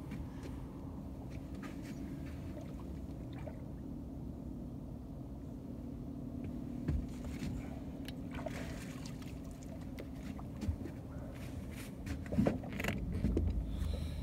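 A boat motor hums steadily and low, with a few short knocks and scuffs from the boat around it.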